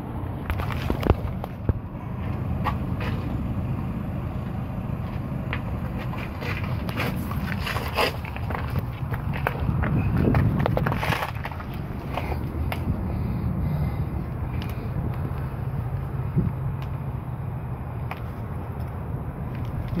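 Scraping, shuffling and knocking of a person crawling on pavement with a handheld camera, over a steady low rumble.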